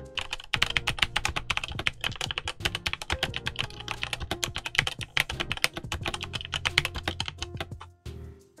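Fast two-handed typing on a Redragon K550 Yama full-size mechanical keyboard: a quick, continuous run of keystroke clacks from unlubricated medium-tactile switches mounted in an aluminium plate.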